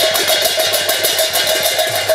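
Instrumental passage of a Pala ensemble with no singing. Small hand cymbals strike fast and evenly, about seven times a second, over a hand drum whose low strokes drop in pitch, with one steady held note sounding throughout.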